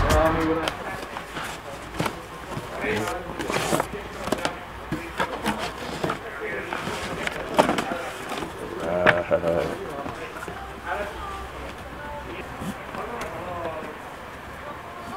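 Voices talking indistinctly in a shop, with several sharp knocks and rustles as a cardboard helmet box and its fabric carry bag are handled on a counter.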